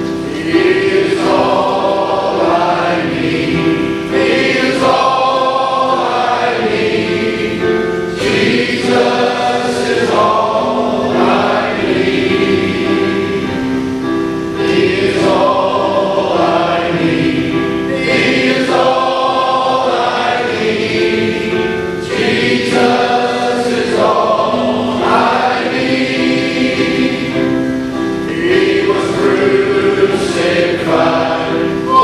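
A large men's choir singing a gospel hymn together, continuously.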